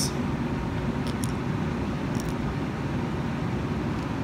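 Steady low mechanical hum of a running machine in the room, with two faint light ticks about one and two seconds in.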